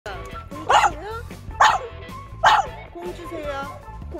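A dog barks three short, sharp times, about a second apart, at a ball it cannot reach. Background music plays underneath.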